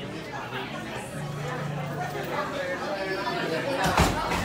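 Indistinct chatter of many people talking in a busy café, with a single sharp knock right at the end.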